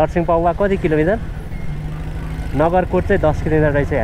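A motorcycle engine runs steadily at cruising speed, a low even hum under a man's talking. The hum is heard on its own for about a second and a half in the middle.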